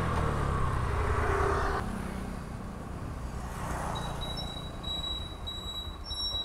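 Motorcycle engine running under wind noise on the microphone as the bike slows and pulls up. The wind hiss drops away about two seconds in, leaving the engine at a low idle, with a faint high steady tone near the end.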